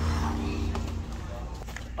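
A steady low mechanical hum with a few held tones, which dies away about a second in, followed by a couple of faint clicks.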